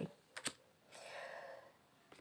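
Tarot cards handled by hand: two or three light clicks as a card is put to the deck, then a faint, brief rustle.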